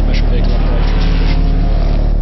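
The Range Rover Sport SVR prototype's supercharged V8 running hard up the hill under background music. A broad rush of engine noise fades about a second and a half in.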